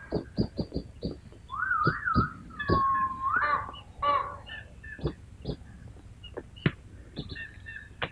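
Birds calling on an old film soundtrack: many short high chirps, with two wavering whistled calls about two and three seconds in, and scattered clicks.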